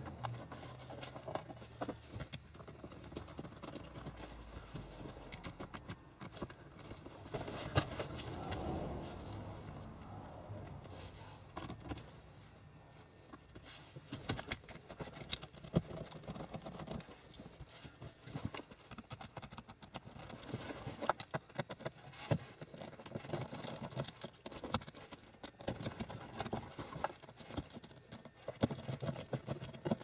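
Faint, irregular clicks, small knocks and rustling of a screwdriver prying at the shifter boot on a manual-transmission shift lever, as the boot is worked loose by hand.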